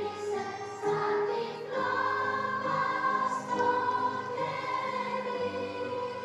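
Children's choir singing, holding long notes over a low accompaniment.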